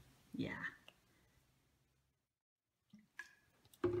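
Speech only: a young child answers with a short "yeah", then there is dead silence, a couple of faint clicks, and an adult's voice starts again near the end.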